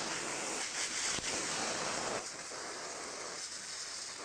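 An oxyhydrogen (HHO) gas torch flame hissing steadily as it cuts through lead. The hiss eases slightly about two seconds in.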